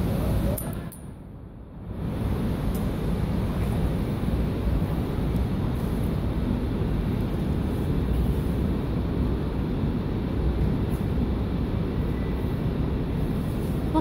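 Steady low rumbling background noise that drops away sharply for about a second near the start, then comes back and holds, with a few faint clicks.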